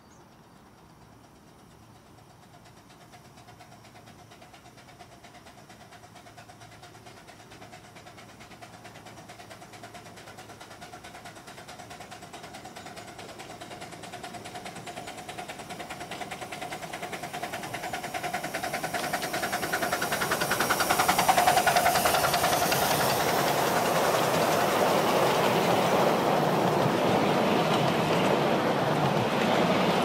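A miniature railway steam train approaching, its running sound growing steadily louder for about twenty seconds until the locomotive passes close by. Its passenger coaches then roll past on the rails.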